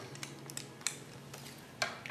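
A few sharp small clicks and crackles of a plastic-wrapped paper pack being worked open by hand, with scissors at hand to cut it.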